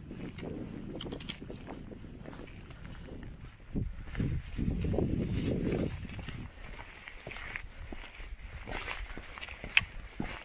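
Footsteps on a stone-pitched fell path, with low wind noise on the microphone that grows louder from about four to six seconds in.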